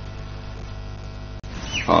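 A steady low hum with no other sound, then a man's voice begins near the end.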